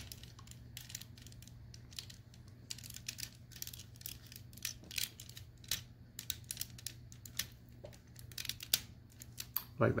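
Plastic parts of a Transformers Generations Skullgrin action figure clicking and rattling as they are handled and pegged together: many small, irregular clicks over a low steady hum.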